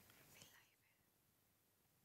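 Near silence: faint steady background hiss, with a faint brief sound in the first half-second.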